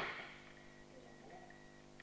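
A single sharp impact at the very start that rings briefly in the hall, then quiet room tone with a faint steady high whine.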